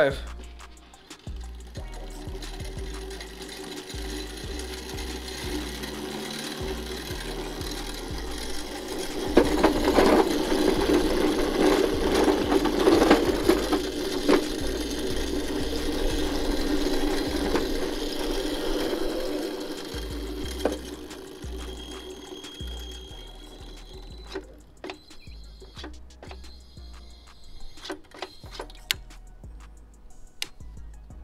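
Razor Crazy Cart's electric drive motor running as the cart drives on 36 V through an overvolt controller, with the wheels on pavement. The sound builds, is loudest in the middle, and fades away about twenty seconds in.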